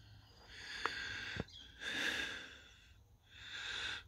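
A person breathing close to the microphone: three soft breaths, a little over a second apart, with one or two faint clicks.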